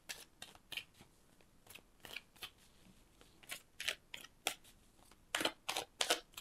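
A tarot deck being handled and shuffled by hand: a string of short, irregular crisp clicks and snaps of card stock, more of them in the second half.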